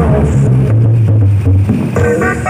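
Loud music from a mobile sound system, here mostly a deep, steady bass with the treble falling away for about a second and a half.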